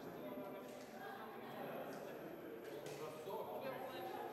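Indistinct chatter of several voices echoing in a large hall, with a few faint clicks.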